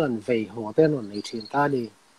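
Only speech: a man talking over a video call, with a brief pause at the very end.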